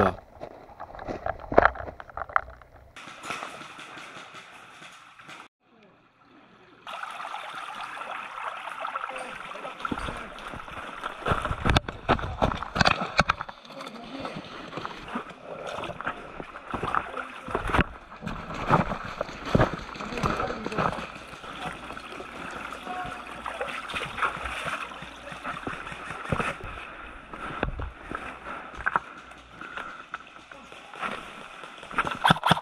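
Shallow, rocky creek running over stones, with the irregular knocks and splashes of footsteps on the wet stream bed. The water sound comes up about seven seconds in and carries on steadily.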